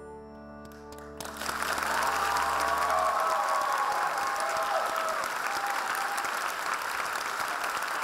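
The pit band's last held chord, with brass, dies away as theatre audience applause breaks out about a second in and continues strongly after the number ends.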